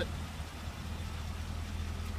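Car engine idling: a steady low hum.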